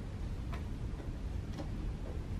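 Quiet library room tone: a steady low rumble, with a few faint, light ticks scattered through it.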